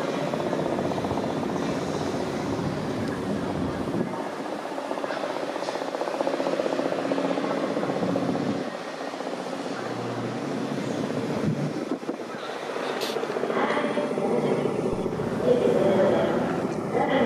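Indistinct voices over a steady rumbling background, with no clear words.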